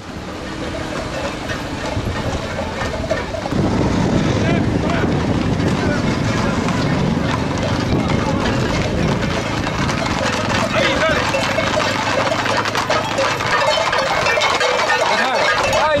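Crowd of spectators talking and shouting, growing louder about three and a half seconds in, mixed with the hooves of a close-packed group of Camargue horses on a paved road.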